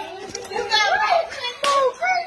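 A young child shouting in a high, wavering voice.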